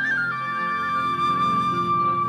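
Live band playing an instrumental passage: a single high melody line with quick wavering ornaments steps down just after the start and holds one long note over low accompaniment.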